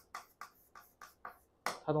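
Chalk writing on a blackboard: several short, quiet taps and scratches of the chalk as a word is written out, stopping after about a second and a half.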